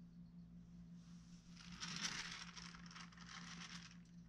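Faint scraping and rustling as the clay sculpture on its stand is turned around, over a steady low electrical hum.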